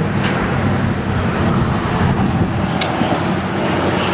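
Electric 1/10-scale RC touring cars running on an asphalt track: a steady mechanical hum, with a thin high motor whine rising in pitch near the end as a car accelerates.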